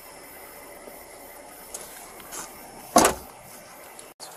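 A patrol car's rear door slammed shut once, a loud, short bang about three seconds in, over a faint steady background.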